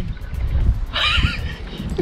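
A short, wavering laugh about a second in, over a low rumble of wind on the microphone.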